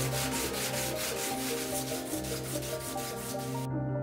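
Photopolymer resin 3D print rubbed back and forth on coarse sandpaper in quick, even rasping strokes that stop abruptly near the end. The base of the print is being sanded flat so its two halves fit together.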